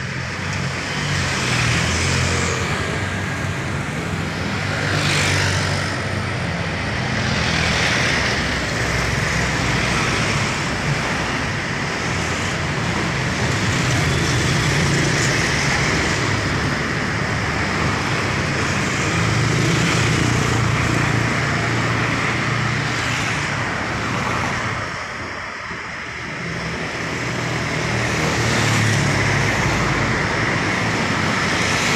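Steady road traffic, mostly motorcycles with some cars and a minibus, passing one after another: a continuous low engine hum with each vehicle swelling and fading as it goes by. A brief lull comes late on before the traffic builds again.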